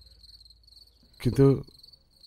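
Crickets chirping in a steady, high, pulsing trill, with a man's voice saying one short word a little past the middle.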